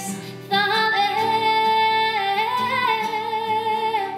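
Female singer holding one long sung note into a microphone over acoustic guitar accompaniment. The note steps up in pitch about two and a half seconds in.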